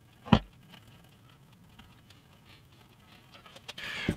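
One sharp knock a third of a second in, then faint scattered ticks and light scraping as glue is spread with a thin wooden stick along the edge of a wooden bass guitar body.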